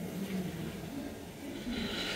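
Quiet background room tone: a faint steady low hum with a soft hiss that comes in near the end.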